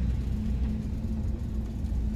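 Low, steady rumble of a cargo van's engine and road noise heard inside the cab as the van moves slowly, with a faint steady hum over it.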